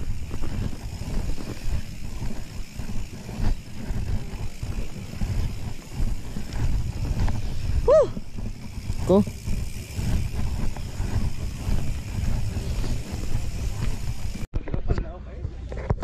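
Mountain bike rolling over a bumpy dirt trail, picked up by a handlebar-mounted camera: a steady low rumble full of small knocks and rattles from the tyres and frame. A voice gives two short calls about midway, and the riding sound cuts off abruptly near the end.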